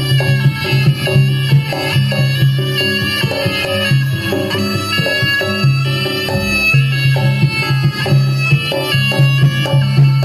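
Live Javanese jaranan senterewe accompaniment: a shrill reed melody, typical of the slompret shawm, over steady low held tones and rhythmic hand drumming.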